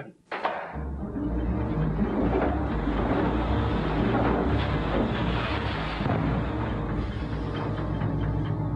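A large textile mill machine starting up about a second in and running with a steady low rumble and rapid clattering knocks.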